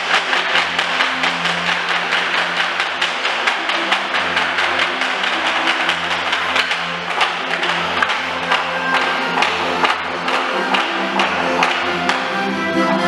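A group of dancers clapping their hands in a quick, even rhythm over the folk dance tune they dance to.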